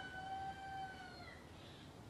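A single long, steady whistle-like call, held for about a second and a half and dipping slightly at its end, followed by a short higher note.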